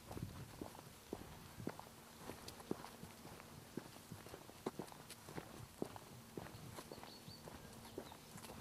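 Hikers' footsteps on a grassy dirt path: faint, irregular soft knocks, about two a second.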